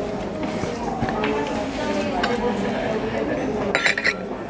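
Porcelain teacup and saucer clinking near the end, a sharp, bright chink of china as the cup is handled, after a couple of lighter clinks of china and cutlery earlier. Steady background chatter of voices runs underneath.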